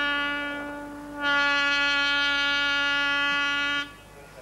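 Blasting warning horn giving long, steady, single-pitched blasts before a bridge is blown up with explosives. One blast fades away over the first second, and a second starts just after and cuts off shortly before the end.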